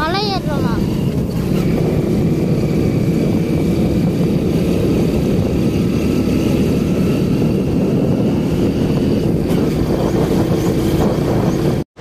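Motorcycle engine running as the bike is ridden along a road, with steady, heavy wind rumble on the microphone. There are a few short chirps about half a second in, and the sound cuts out abruptly just before the end.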